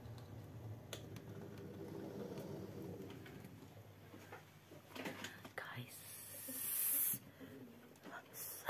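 Hushed whispering, with a breathy hiss that swells from about six seconds in and cuts off suddenly near the end.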